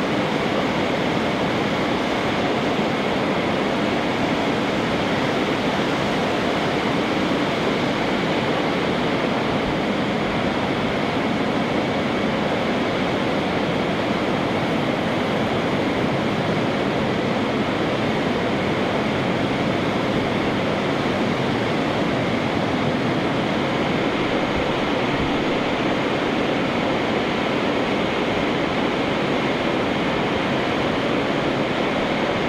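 Steady, even rush of air from blowers keeping a stage curtain billowing, with a faint hum in it.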